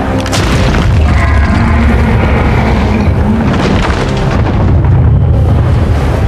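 Film sound effects of a giant monster charging through a forest: a loud, continuous deep rumble with booms and crashes, over a music score.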